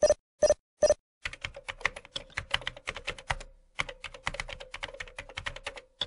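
Three short, evenly spaced pulses in the first second. Then a computer keyboard is typed on in quick, irregular keystrokes, with a brief pause about halfway through.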